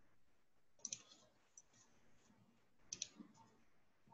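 Near silence broken by faint, sharp clicks: a quick cluster about a second in, a lone click soon after, and another cluster about three seconds in.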